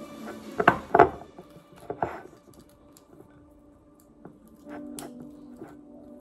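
Metal fork clinking and scraping against a ceramic bowl while mashing soft microwaved sweet potato. Several sharp clinks come in the first two seconds, then fainter, sparser ones.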